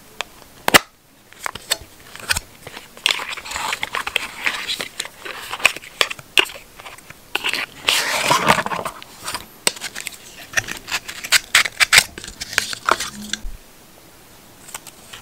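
Fingernail taps and clicks on the small cardboard box of an Apple 20W USB-C power adapter as it is handled and opened, with a sharp click about a second in and spells of cardboard and paper rustling, the longest as the box opens past the middle. Near the end the plastic-wrapped adapter is handled with more light clicks.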